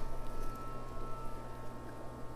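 Steady low room hum with a few faint steady high tones, and no distinct sound event.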